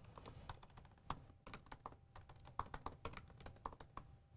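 Faint typing on a computer keyboard: a quick, irregular run of key clicks as a short phrase is typed.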